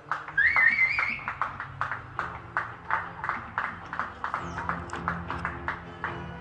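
Hands clapping in applause, sharp claps at about three a second, with a short wavering rising whistle about half a second in.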